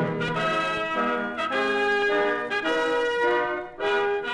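Orchestral music led by brass plays a melody of short held notes, with a brief drop in level near the end. It is the closing music of a 1944 radio broadcast, heard off an old transcription recording.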